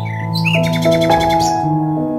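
Soft background music of held piano or keyboard notes, with bird chirps layered over it. The chirps run as a fast trill from about half a second in and stop shortly before the end.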